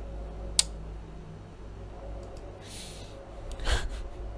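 Quiet room tone with a steady low hum, broken by one sharp click just over half a second in, then two short breathy nasal exhales close to a headset microphone near the end.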